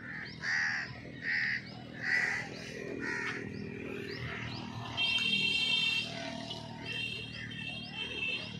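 A crow cawing four times in steady succession, with other birds chirping; a longer, buzzier call sounds about five seconds in and again near the end.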